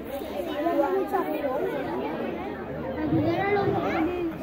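A crowd of children's voices chattering and calling out at once, many talking over each other.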